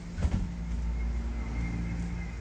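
Low steady rumble of strong thunderstorm wind, with a couple of knocks about a quarter of a second in.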